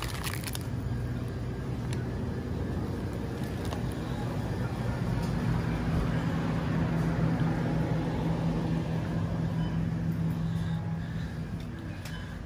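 Plastic packaging crinkles briefly at the start. Then a shopping cart loaded with bottled water rolls across the store floor with a steady low rumble, louder in the middle.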